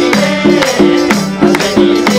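Live Nepali dohori folk music: a short pitched melody repeats over a steady beat of about two sharp strikes a second, with hands clapping along.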